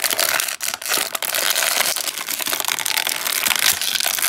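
Clear plastic blister-pack tray crinkling and crackling loudly as it is flexed and squeezed in the hands while an action figure is worked out of it.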